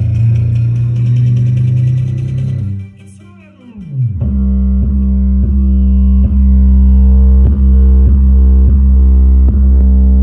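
Bass-heavy music played loud through a pair of Movie Master tower speakers, each with four 10-inch woofers, as a sound test. A deep held bass note drops away with a falling sweep about three seconds in, then a thick, booming bass line with a steady beat comes back about a second later.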